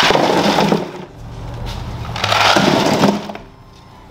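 Ice cubes poured from a scoop into a foam ice chest, clattering in two pours: one right at the start and a second about two seconds in.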